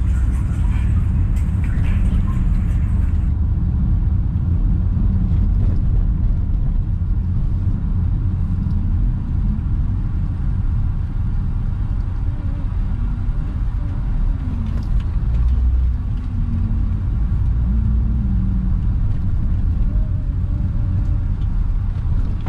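Steady low rumble of a car's engine and tyres heard from inside the cabin while driving slowly, with small rises and falls in engine pitch.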